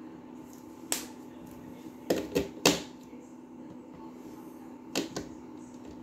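Sharp plastic clicks of KingArt mini marker caps being pulled off and snapped back on as markers are handled: one click about a second in, three close together around two seconds in, and two more near the end, over a steady low background hum.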